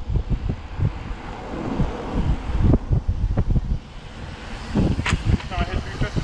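Wind buffeting the microphone of a handlebar-mounted camera on a moving bicycle, in uneven low gusts. A sharp click comes about five seconds in, followed by faint voices.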